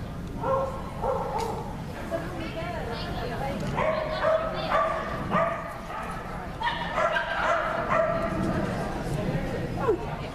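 A dog barking repeatedly in short barks, in clusters about half a second apart, thickest through the middle of the stretch.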